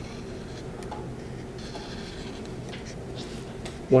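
Dry-erase marker drawing on paper: a few short, faint scratchy strokes over a steady low hum.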